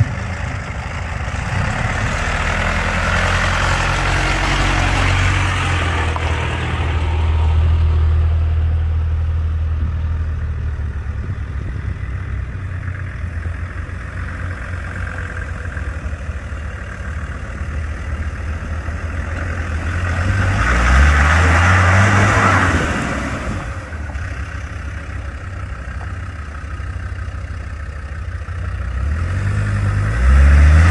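4x4 engines working up a rocky off-road lane: a Mitsubishi Shogun pulls steadily and grows loudest as it comes close, then a Land Rover Discovery 2 climbs after it. The engine revs up in rising notes about two-thirds of the way through and again at the very end.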